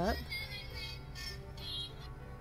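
Light-up squishy plush toy's built-in sound chip playing a song.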